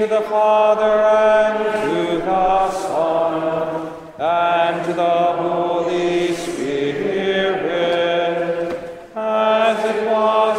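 Liturgical psalm chant: sung phrases on long held notes with short rises and falls in pitch, breaking briefly about four seconds in and again near nine seconds.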